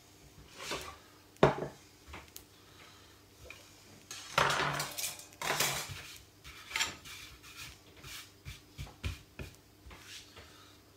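Metal spatula knocking and scraping against a small frying pan of wraps frying in oil: scattered clicks and taps, with two longer scraping noises about four and five and a half seconds in.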